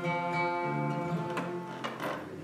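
Acoustic guitar playing the closing chords of a song: a chord rings out, changes partway through, and two sharp final strums come near the end.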